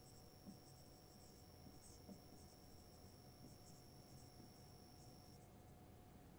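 Near silence: faint scratches of a marker writing on a whiteboard, with a faint steady high-pitched whine that cuts off near the end.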